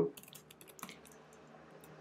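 Computer keyboard typing: a quick run of faint key clicks in the first second, then a few scattered clicks.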